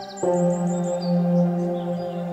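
Ambient meditation music. A bell tone is struck about a quarter second in and rings on in sustained, layered tones, while birds chirp high above it in a quick run of short notes, then fainter ones.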